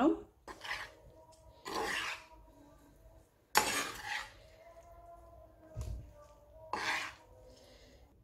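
Metal spoon scraping and knocking against a pan in about five short strokes, the loudest about three and a half seconds in, with a faint metallic ring between them. This is the oil tempering being scraped out onto cooked rice. A dull low thump comes near six seconds.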